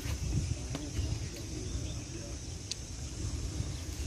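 Wind buffeting the microphone in a rumble, with a steady high hiss in the background and a few sharp clicks from eating grilled corn on the cob.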